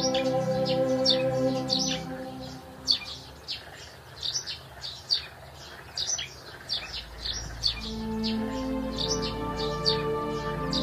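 Chirping bird calls, short and repeated a few times a second, over background music of held chords. The music fades out about two to three seconds in and comes back with a low drone near the end.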